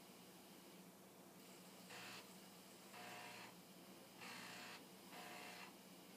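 Commodore 1541 floppy disk drive head stepping from one end of the disk to the other, between tracks 35 and 1, for the performance test's track writes and reads. It is heard as four short, faint bursts of seeking noise about a second apart, starting about two seconds in.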